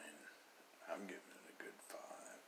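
A man's quiet, whispered speech in short, faint stretches.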